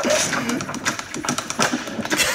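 A rapid, irregular series of sharp punch impacts from a boxing film's soundtrack.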